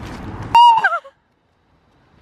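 A short, high-pitched yelp from a startled person, held for a moment and then wavering down in pitch, about half a second in, cutting off a steady rushing noise; silence follows.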